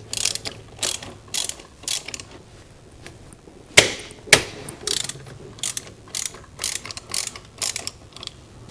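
Hand ratchet with a 12 mm socket and extension clicking in short rasping strokes, about two a second, as a rear brake caliper bolt is loosened and backed out. Two louder, sharper clicks come a little under four seconds in, half a second apart.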